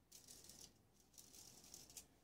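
Faint scratchy brushing of a paintbrush working acrylic paint, in two short spells.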